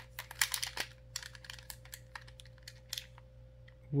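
Hard plastic parts of a Beyblade X Bey Battle Pass and a ripcord launcher clicking and rattling against each other as they are handled and pushed together: a quick run of clicks in the first second, then scattered ticks. The pass is not latching onto the launcher.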